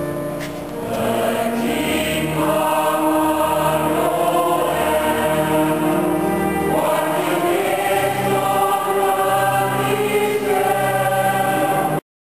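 Church choir of mixed voices singing held chords, with low sustained notes underneath.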